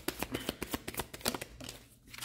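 A deck of tarot cards being shuffled by hand: a rapid run of crisp card clicks and snaps that stops just before the end.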